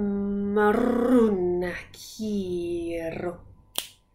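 A woman's voice chanting wordless light language: a long held note, a wavering run that falls in pitch, then a second held note sliding down at its end. A single sharp click comes near the end.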